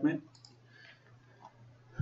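A few faint computer mouse clicks in a short pause between spoken words.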